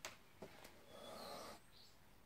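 Near silence: a faint click, two lighter ticks, then a short breathy puff about a second in, from a muzzled Cane Corso lying close by.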